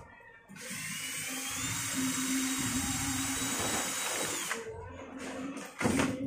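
Cordless drill with a mixing paddle stirring a cement-based mix in a small pail. The motor whine rises in pitch as it spins up, holds steady for about four seconds, then stops. A sharp knock comes near the end.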